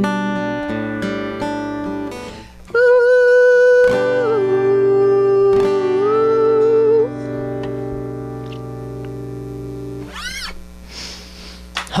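Acoustic guitar strumming a song's closing chords. Over a last strum a single note is sung and held, stepping down and then sliding back up before the voice stops at about seven seconds in. The guitar chord rings on and fades away as the song ends.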